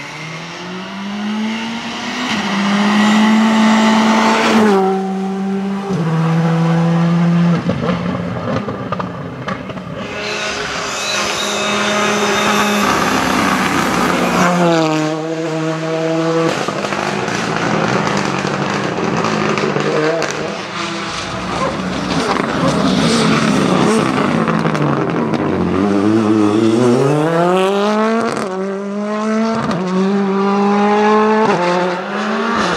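Rally cars driven flat out on a tarmac stage, one after another: engine pitch climbs and then drops in steps at each upshift, with a quick rise and fall as each car goes past.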